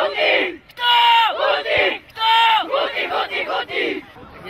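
A team of young boys shouting their team cheer in unison from a huddle: three or four shouted phrases, each held and then dropping in pitch at its end.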